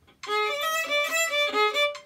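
A violin playing a short run of quick sixteenth notes, a practice chunk repeated on request. It starts about a quarter second in and stops just before the end.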